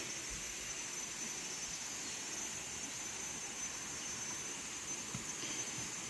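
Steady tropical-forest ambience: an even hiss with a constant high-pitched insect drone above it.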